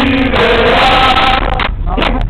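Group of football fans chanting in unison, many male voices singing loud and overloaded, with a short break for breath near the end.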